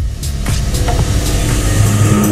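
Rising whoosh sound effect with a deep rumble under electronic music, building steadily in loudness toward a logo reveal.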